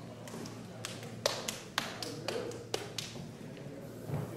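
A few sharp taps and knocks at irregular intervals, the clearest about a second and a quarter in, near the middle and near the three-quarter mark, over a steady low hum.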